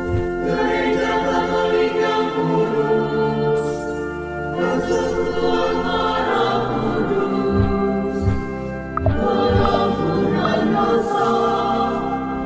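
Choral music: a choir singing held chords, with a few low beats in the middle.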